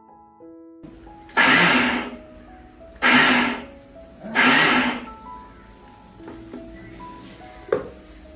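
Electric mixer grinder pulsed three times in short bursts, each under a second, coarsely grinding grated coconut. A short knock follows near the end.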